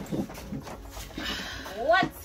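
People's voices, faint and mixed, with a high rising vocal sound near the end that runs straight into speech.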